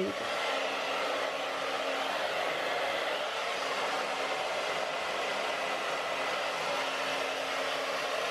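Handheld hair dryer blowing steadily while drying long hair, a constant rush of air over a faint low hum.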